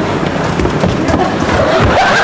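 Scuffling on a stage floor: feet thumping and scraping several times over a rough, steady noise.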